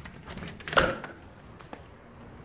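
A door being opened onto a wooden deck: one short thunk about three-quarters of a second in, with a few faint clicks around it.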